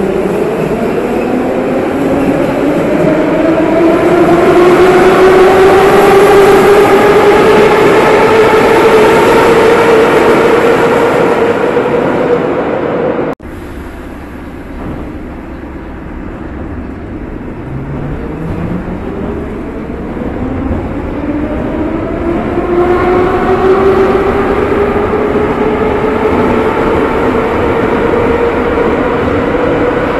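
Metro train's traction motors whining steadily upward in pitch as the train accelerates away from the platform. About 13 seconds in the sound cuts off abruptly and is replaced by the rumble of a moving carriage heard from inside, where the same rising motor whine builds again from about 18 seconds as the train accelerates.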